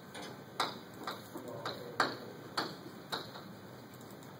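Chalk writing on a chalkboard: a string of sharp, irregular taps as the chalk strikes the board, about five loud ones, with light scratching between them.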